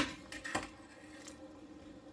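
A sharp metal clink of kitchenware, then a lighter click about half a second later and a few faint knocks, as the blanched cauliflower florets are tipped into cold water to stop the cooking.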